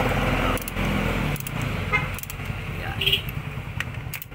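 A small motorcycle engine running nearby in a workshop, with background voices over it. About three seconds in comes a short metal clink from a socket wrench on the valve cover bolt.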